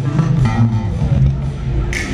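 Live band music led by a five-string electric bass guitar playing a prominent, changing bass line, with electric guitar above it.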